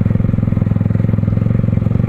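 Yamaha R15's single-cylinder engine running steadily under way, a rapid even pulse with no revving.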